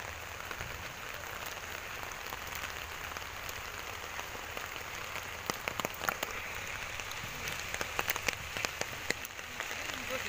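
Steady rain falling, with sharp ticks of nearby drops that come more often in the second half.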